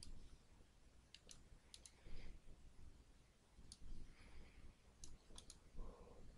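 Faint computer mouse clicks over near-silent room tone: about nine short clicks, several in quick pairs.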